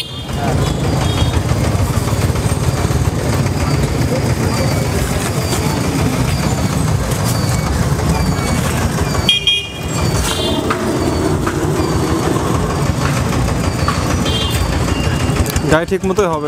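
Steady loud low rumble of street traffic, with voices underneath; it drops out briefly about nine and a half seconds in.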